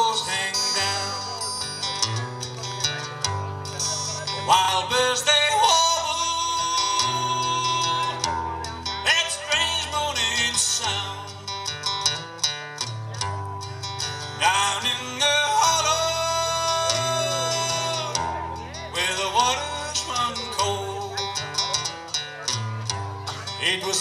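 A man singing a slow country song live, accompanying himself on an acoustic guitar, with long held notes in the vocal lines.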